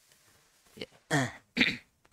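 A man clearing his throat close to a headset microphone: two short bursts about half a second apart, starting about a second in.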